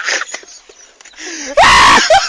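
A person laughing faintly, then letting out a sudden, very loud scream in the last half second.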